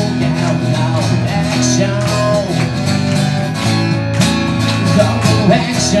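Band music: a song with guitar and a steady beat.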